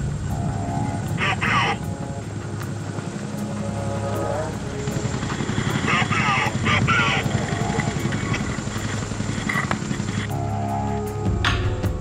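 Helicopter running steadily overhead, its low drone with a faint regular rotor beat, while voices call out in short bursts over it.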